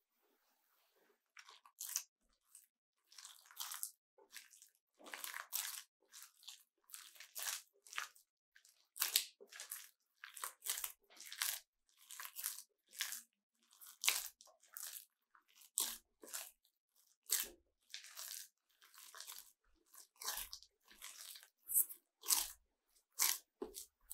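Hands mixing a wet, seed-laden bread dough of soaked flaxseed, oats and sesame with flour in a glass bowl. There is a rapid series of short, noisy squeezing and crunching strokes, roughly one every half to one second, beginning about a second and a half in. The dough is wet and hard to mix.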